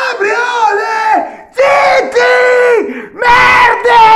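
A man shouting a chant in long, drawn-out yelled notes, with a short break about a second and a half in and a rougher, scream-like shout near the end.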